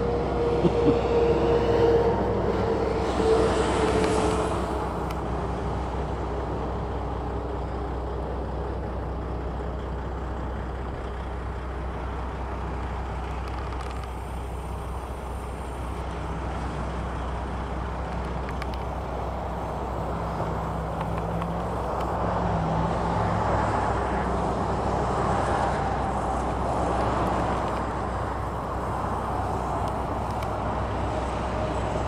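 Steady motor-vehicle engine drone with road noise, continuous and even in level, swelling slightly a little after the middle.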